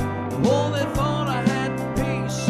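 A man singing a gospel song at the piano with a backing band, a beat falling about twice a second under the vocal line.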